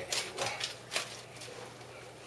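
Aluminium foil crinkling as it is pulled back by hand: a few short crackles in the first second, then quieter.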